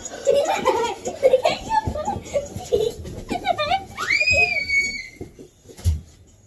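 Children laughing and shrieking, with a long high-pitched squeal that rises and then holds about four seconds in. Dull thumps come from underneath, and a heavier thump lands just before the end.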